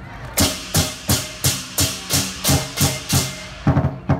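Lion dance percussion: drum, cymbals and gong struck together in a steady beat of about three strokes a second, with a quick double stroke near the end.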